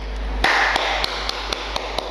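A quick run of light clicks, about seven or eight a second, over a soft hiss.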